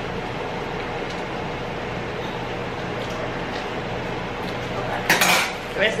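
Light clinks and scrapes of a knife and kitchen utensils at the stove over a steady low hum, with a louder scrape or rustle about five seconds in.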